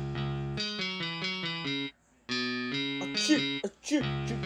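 The hip-hop backing track drops to a break without drums: a plucked melody of quick, stepping notes. It cuts out completely for a moment just before halfway, then resumes, with a few short gliding voice-like sounds near the end.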